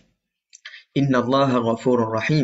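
A man speaking, starting about a second in after a brief pause.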